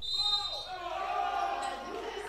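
Live court sound of a basketball game in a large sports hall, with faint high wavering tones over a steady hall background.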